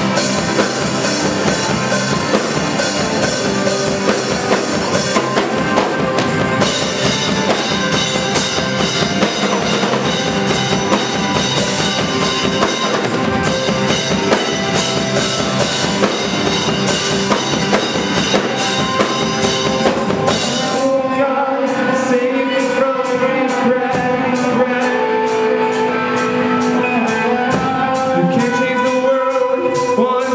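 Live post-punk/new-wave rock band playing loud, with drum kit and electric guitar. About twenty seconds in, the busy drumming thins to a steady, even beat under sustained held notes.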